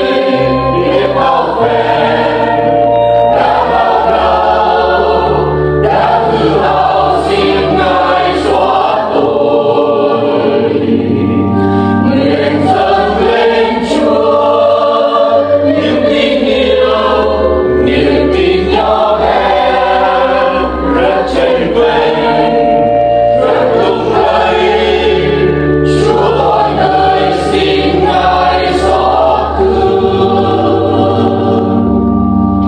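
Church choir singing a Vietnamese Catholic hymn in harmony, with instrumental accompaniment holding low bass notes under the voices.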